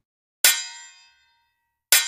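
Two bright metallic dings about a second and a half apart, each struck sharply and ringing out over about half a second. This is the bell sound effect of a subscribe-button animation.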